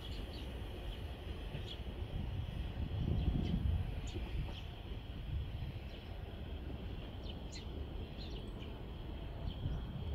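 Small birds chirping in short separate calls over a low, uneven rumble that swells briefly about three seconds in.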